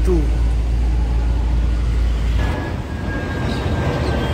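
Traffic on a busy city road, cars and auto-rickshaws running past, with a steady low rumble that stops suddenly a little past halfway.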